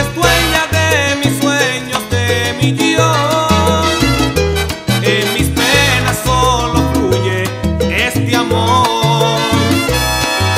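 Salsa music playing loudly with no words sung, over a repeating bass line and steady percussion.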